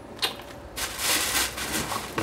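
A single click, then about a second of rustling and handling noise as a shoe is put down and the next item is picked up.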